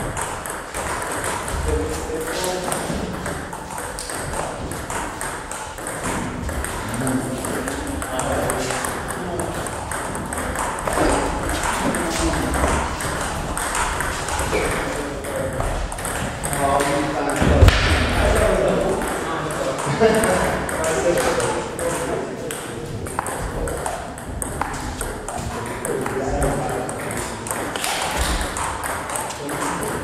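Table tennis rallies: a celluloid ball clicking quickly back and forth off the bats and the table, many sharp hits with short pauses between points.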